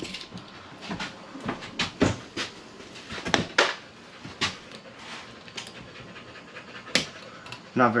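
A blade scraping and clicking as it cuts the caulking behind an aluminium diamond-plate trim strip on the trailer wall: a run of irregular short scrapes and clicks, with one sharper click near the end.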